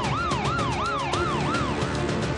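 Emergency-vehicle siren in a fast yelp, its pitch sweeping up and down about three times a second and fading out near the end, over dramatic theme music with a steady beat.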